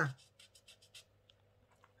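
Felt-tip marker scratching a quick run of short, faint strokes on pattern paper as a point is marked, followed by a few fainter ticks.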